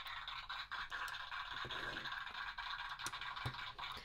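A plastic LEGO model being handled and shifted on a tabletop: a soft, steady scraping with a few light clicks of bricks.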